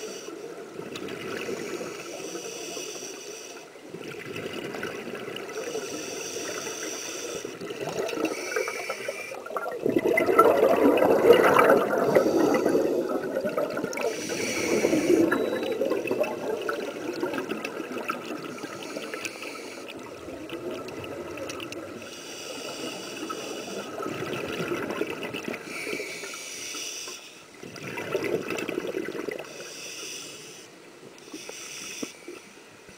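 Scuba diver breathing through a regulator underwater: hissing inhalations alternating with rushing, gurgling bursts of exhaled bubbles. The loudest bubble exhalation comes about ten seconds in and lasts several seconds.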